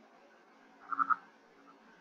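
Purple frog calling: a brief run of three quick clucks about a second in.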